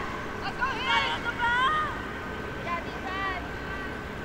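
Short voices calling out across an outdoor lacrosse field, a few brief shouts in the first two seconds and another about three seconds in, over a faint steady high tone and low background rumble.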